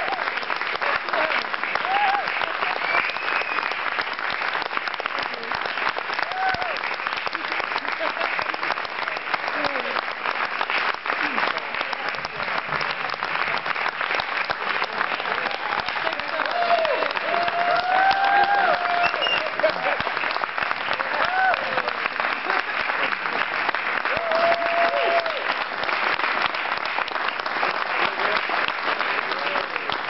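Concert audience applauding steadily with dense clapping throughout, with scattered shouts and cheering voices from the crowd.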